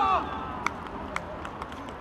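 A loud shout at the very start as a goal goes in, followed by a few sharp clacks about half a second apart over open-air background noise on a football pitch.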